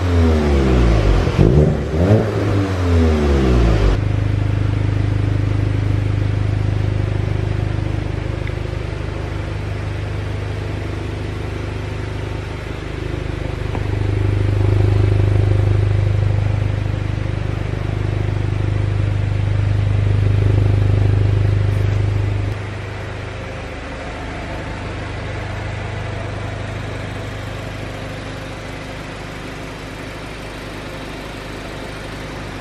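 Exhaust of a 2021 VW Golf 8 GTI's turbocharged 2.0-litre inline-four: quick throttle revs rising and falling in the first few seconds, then settling to a steady idle. About 22 seconds in, the idle drops to a quieter, lower note.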